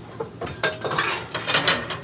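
Kitchen clatter: several sharp clinks and knocks of pots, pans and utensils being handled, a few of them ringing briefly.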